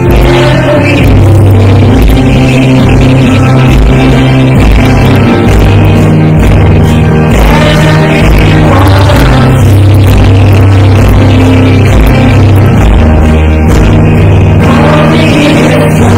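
Live worship band playing loud, with electric guitar, steady low bass notes that change about every second, and a woman singing lead into a microphone with others singing along.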